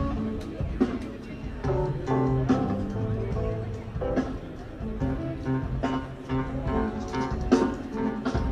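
Live rock band playing an instrumental jam with electric guitar, bass guitar and drum kit, heard as an audience recording of the stadium PA. Bass notes move steadily underneath guitar lines, with drum hits throughout.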